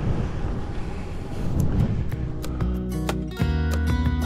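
Wind rumble on the microphone while riding, then background music with plucked guitar notes comes in about halfway through and takes over.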